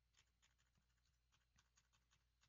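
Near silence with faint, quick clicks, about five a second, from presses skipping a media player forward, over a low steady hum.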